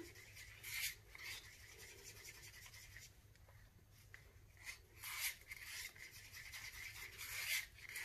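Wooden stir stick stirring pigmented resin in a paper cup: a few faint scraping strokes against the cup.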